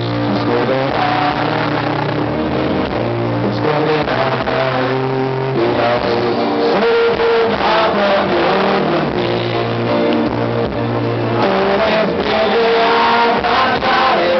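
Live pop-rock band playing loudly, with bass, drums and electric guitar behind a male lead vocal, recorded from the audience.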